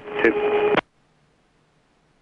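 A short, clipped burst of aircraft radio transmission, under a second long, with a steady hum and a fragment of speech, cutting off abruptly.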